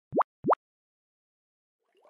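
Two quick cartoon 'bloop' sound effects, each a fast upward pitch sweep, about a third of a second apart near the start.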